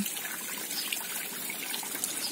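A small stone waterfall in a garden pond, water trickling steadily down the rocks and splashing into the pond.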